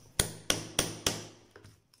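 A hammer striking a metal hole punch four times in quick succession, about a third of a second apart, driving it through a sandal insole to punch a hole. A couple of faint light taps follow near the end.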